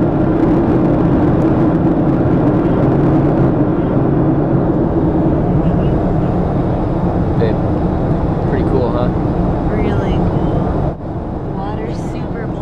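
Loud, steady jet airliner cabin noise, with a low hum from the engines under it, heard from inside the cabin. Faint voices rise through it in the middle, and about eleven seconds in the sound cuts abruptly to a slightly quieter cabin noise.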